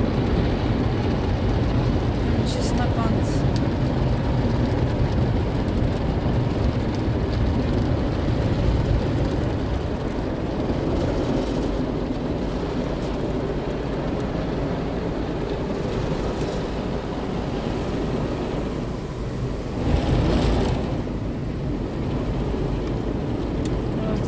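Automatic car wash heard from inside the car: a steady rush of water spray and rotating brushes on the windscreen and body, with a louder surge about twenty seconds in.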